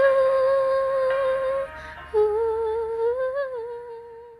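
A woman humming the closing notes of a song: one long held note that breaks off about a second and a half in, then a second long note that swells a little near the end and fades.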